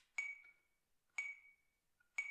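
Metronome ticking at about one click a second: two short, ringing pings.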